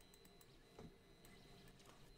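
Near silence: faint room tone with a few soft ticks and a faint steady hum.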